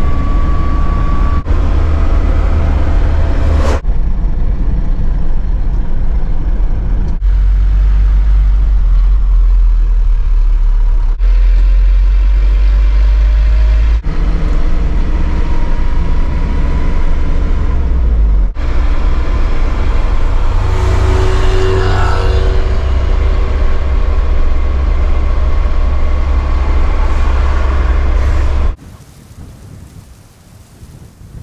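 Wind and road noise inside a moving van or truck cab with the window open: a loud, deep, steady rumble of engine and tyres under a rushing hiss, changing abruptly several times where the clips are cut. A second or so before the end it drops suddenly to much quieter wind.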